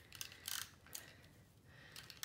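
Faint handling of adhesive tape on a silicone craft sheet: a few short, sharp rustles and ticks as tape is pulled and pressed down, the strongest about half a second in.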